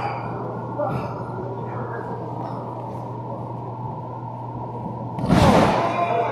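Wrestlers' bodies slamming down onto the wrestling ring once, a loud thud about five seconds in, over a steady low hum and murmur of the hall.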